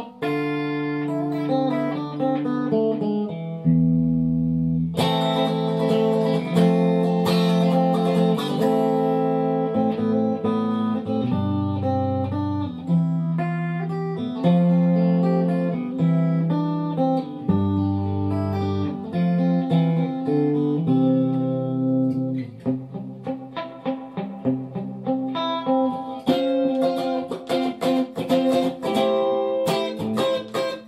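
Stratocaster-style electric guitar playing a string of song intros back to back, single-note riffs mixed with chords. A new, louder intro starts sharply about five seconds in, and the picking turns choppier in the last third.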